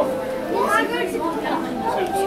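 Shoppers' voices chattering in a busy clothing store, several people talking at once.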